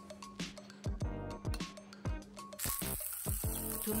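Background music with a steady beat. About two-thirds of the way in, the sizzle of tuna steaks searing in oil in a frying pan comes in under it.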